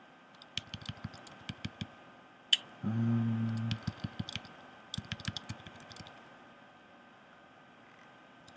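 Computer keyboard typing in irregular runs of keystrokes, with one sharper, louder key click about two and a half seconds in. Just after it comes a short, low, steady hum lasting about a second, then the typing resumes and stops for the last two seconds.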